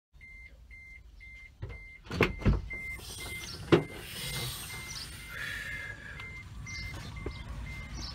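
An electronic beeper sounding a single high beep about twice a second, evenly and without pause, with a few loud knocks and thumps about two to four seconds in.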